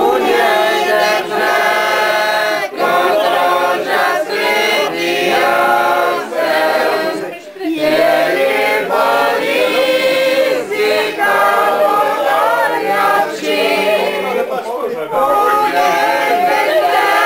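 A group of voices singing together without instruments, in long held phrases broken by brief pauses for breath.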